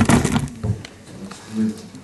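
A man speaking Russian in a small meeting room, opening with a brief sharp knock or rustle, then a short pause before he speaks again near the end.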